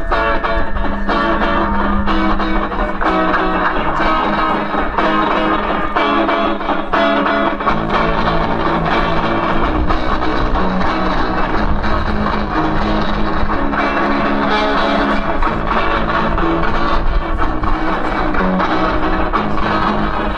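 Live rock band playing: electric guitar through an amplifier over drums, running steadily without a break.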